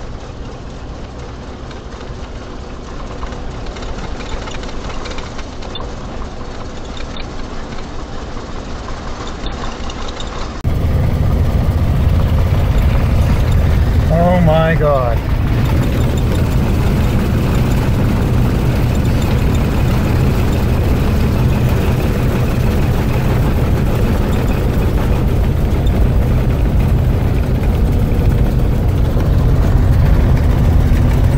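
A 1982 Fleetwood Tioga motorhome under way: a steady engine drone with road noise. About ten seconds in it becomes markedly louder and deeper, heard from inside the cab.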